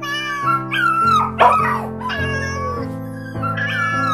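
Dogs and cats in shelter cages calling, a run of wavering, gliding cries, over sustained background music.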